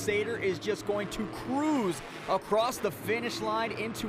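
Voices talking over the low, steady hum of a monster truck's engine, which fades after about a second.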